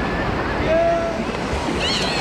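Ocean surf washing through shallow whitewater, with wind buffeting the microphone. Voices call faintly over the water, one short held shout about halfway through and more near the end.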